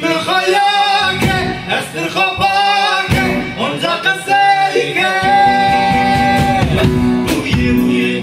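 A man singing a song with a live band of bağlama, electric guitar and acoustic guitar, holding one long note about five seconds in.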